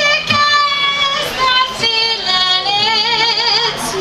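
A woman singing long held notes of a folk song over her own acoustic guitar. The last note wavers with vibrato in the second half.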